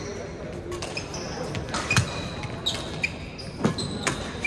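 Badminton rackets striking the shuttlecock in a doubles rally: sharp hits, the loudest about two seconds in and again shortly before the end, with court shoes squeaking on the gym floor between them.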